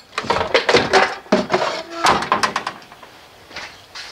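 A quick, irregular run of knocks and clatters for the first two and a half seconds or so, then much quieter.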